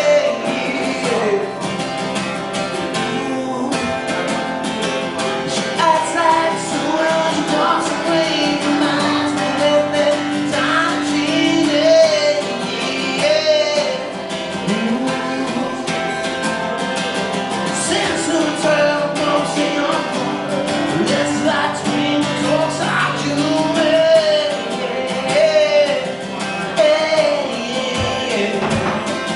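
A man singing live while strumming his acoustic guitar, a solo voice-and-guitar song with steady strumming under sung lines and wavering held notes.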